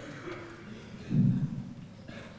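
A short, dull low thump about a second in, loud against faint room noise.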